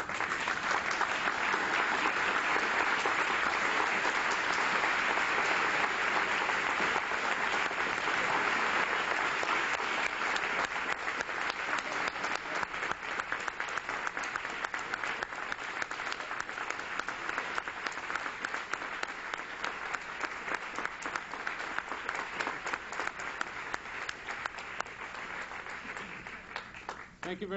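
Audience applauding, loudest in the first ten seconds or so, then slowly fading and thinning out towards the end.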